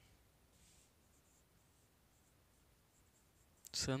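Faint scratching hiss of a marker pen writing on a whiteboard. One longer stroke comes about half a second in, followed by short light strokes. A man's voice starts just before the end.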